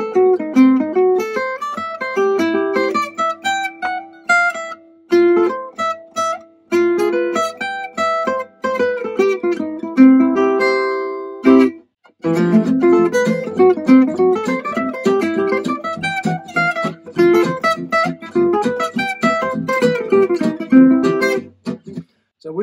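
Acoustic gypsy jazz guitar playing a long, fast single-note turnaround lick with picked arpeggio runs. It breaks off briefly about halfway through, then the run starts again.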